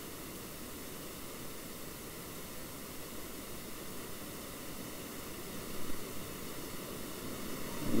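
Steady low hiss of a recording's microphone noise and room tone, with a couple of brief faint sounds about six seconds in.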